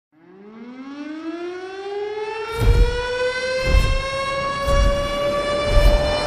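Opening of a music track: a siren tone winds up in pitch over the first two seconds and then holds. From about two and a half seconds in, deep bass thumps join it, about one a second.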